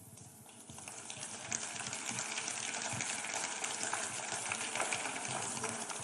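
Audience applauding: many hands clapping together, building up over the first second or two, holding steady, then easing near the end.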